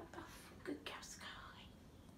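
A person's voice, faint and breathy, speaking very softly, close to a whisper, in a few short bits.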